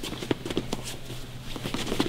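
Feet shuffling and scuffing on gym mats, with irregular light taps and clothing rustle, as two people grapple in a clinch. A steady low hum runs underneath.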